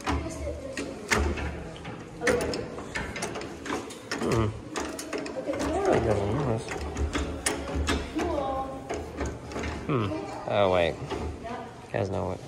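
Indistinct voices that no one in the recording speaks over, mixed with scattered sharp clicks and knocks.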